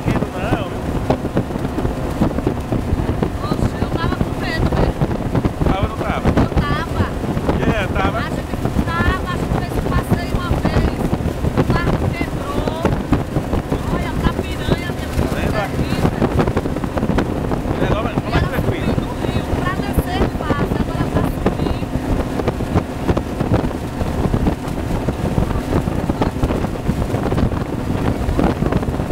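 A motorboat's engine running steadily at speed, with wind buffeting the microphone and the rush of water. Voices call out now and then over the noise.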